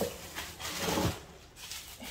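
Plastic bubble wrap rustling and crinkling as a wrapped item is pulled out of a cardboard box, dying down after about a second.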